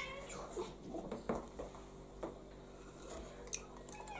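A cat meowing: the tail of one meow at the start and another beginning right at the end. In between are light clinks and taps of cups and a spoon on the table over a low steady hum.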